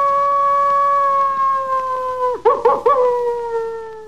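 Coyote howling: a long howl held on one steady pitch, broken about two and a half seconds in by three quick yips, then a long howl that slides down in pitch and fades.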